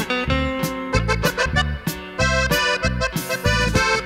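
Norteño band music with no singing: an accordion melody over guitar and a steady bass-and-drum beat.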